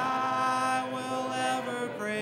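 Congregation singing a hymn a cappella in parts, holding a long note that slides up into place at the start.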